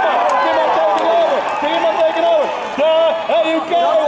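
A man's excited race commentary over a public-address loudspeaker, with crowd noise underneath.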